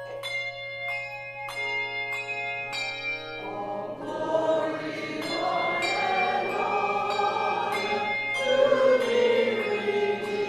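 Struck, ringing bell-like notes play one after another, then a church choir comes in singing about three and a half seconds in and carries on over the accompaniment.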